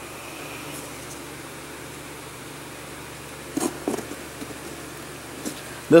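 Steady low room hum with a few light clicks and taps a little past the middle, as a small popsicle-stick-and-hot-glue cover is handled in the hand.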